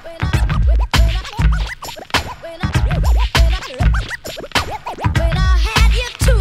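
Turntable scratching over a hip-hop beat: a vinyl record pushed back and forth by hand, throwing a sample into quick rising and falling pitch sweeps between heavy kick-drum hits.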